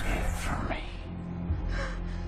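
A woman gasping in fright, a few sharp breaths in and out, over a low, droning film score.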